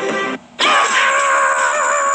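Music stops short near the start; after a brief gap a cartoon character lets out one long, high-pitched scream, held steady with a slight waver.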